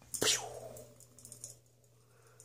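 A mouth-made "pew" with a falling pitch, voiced as a ceiling fan's blades are spun by hand, followed by a few faint light clicks.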